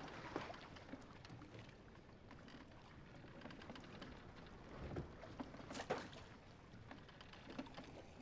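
Quiet sea ambience in a small wooden open boat: a soft, steady wash of water with scattered small wooden knocks, one sharper knock about six seconds in.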